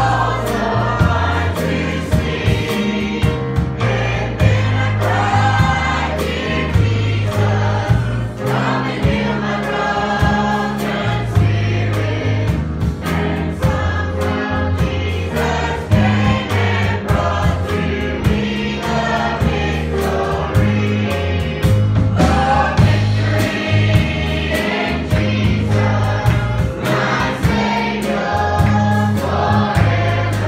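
Two young girls singing a gospel song together, backed by a live band: drum kit keeping a steady beat and an electric bass playing a moving bass line under the voices.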